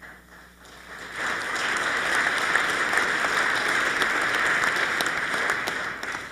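Crowd of legislators applauding: the clapping builds over about the first second, holds steady, and dies away near the end.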